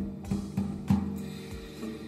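Water-damaged nylon-string classical guitar sounding a few sharp, percussive strokes, its strings left ringing and slowly fading between them.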